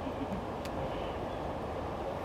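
Steady low rumbling outdoor noise with no distinct events, a few faint ticks in it.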